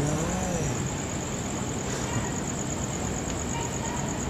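Steady outdoor street noise of traffic, under a continuous high-pitched cricket trill. A faint distant voice rises and falls in the first half second.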